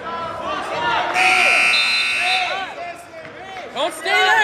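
A gym scoreboard's match-timer buzzer sounds once, a steady electronic tone lasting a little over a second that starts about a second in, over voices in the gym.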